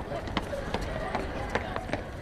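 Footsteps on hard ground: a few crisp steps, about two to three a second, over a steady low outdoor background.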